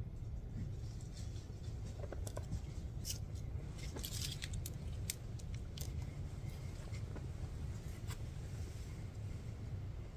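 Steady low rumble with scattered small sharp clicks and crackles, thickest a few seconds in, like rustling or light handling close to the microphone.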